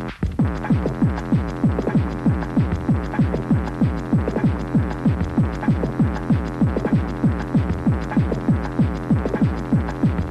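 Hard techno: a fast, steady distorted kick drum, about two and a half beats a second, each beat falling sharply in pitch, over a continuous bass drone. A brief dropout in the sound comes just after the start.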